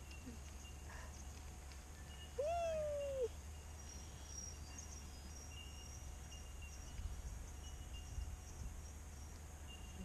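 Quiet outdoor background with a low steady rumble and faint high chirps, broken once about two and a half seconds in by a single drawn-out call that rises and then falls, lasting under a second.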